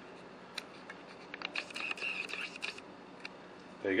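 Camera handling noise: a string of small clicks and scrapes, with a faint high whir of the lens motor in the middle.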